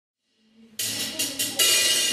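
Silence, then a few cymbal strokes starting suddenly under a second in, each with a bright hiss that fades before the next.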